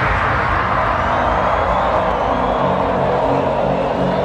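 Loud hardcore dance music over a festival sound system, heard from inside the crowd: a breakdown in which a hissing noise sweeps steadily downward and a simple low synth line steps along as the heavy kick drum thins out after about a second.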